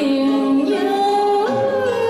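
Woman singing a Vietnamese cải lương song, holding long notes that step up and down in pitch.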